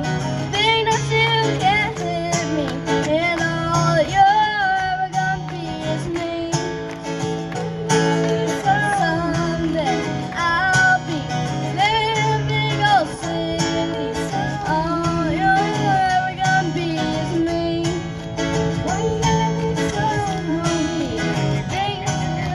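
A young girl singing through a PA system, accompanied by a strummed acoustic guitar.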